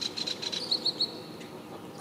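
A small bird chirping: a fast run of short high chirps, about ten a second, then three slightly higher notes, ending about a second in.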